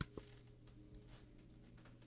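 Near silence with a faint steady hum, broken right at the start by a soft click and a fainter one just after as a tarot card is slid off the top of the deck.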